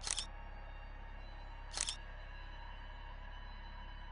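Two short, crisp clicks about two seconds apart, one right at the start and one near the middle, over a faint steady low hum.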